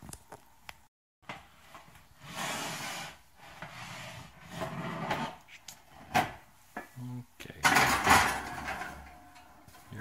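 An oven door opening and a lidded enameled cast-iron skillet being set on the oven's wire rack and slid in: scraping and rubbing of metal with a few sharp knocks, loudest near the end.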